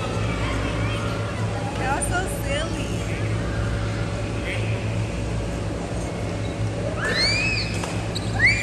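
Steady low rumble with faint distant voices. Near the end, a high-pitched voice rises and falls in a few quick squeals.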